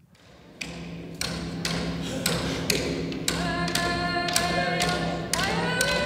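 Inuvialuit drum dance: large frame drums (qilaut) struck with sticks in a steady beat about twice a second, starting about half a second in. A group of singers comes in about halfway through, with more voices joining near the end.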